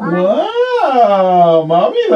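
A long drawn-out vocal sound from a person's voice, sliding up in pitch and back down, held about a second and a half, with a shorter one starting near the end.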